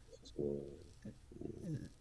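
Quiet hesitation sounds from a man's voice: a held "euh" about half a second in, then a soft hum that falls in pitch near the end.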